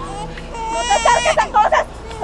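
A baby crying: high, wavering wails.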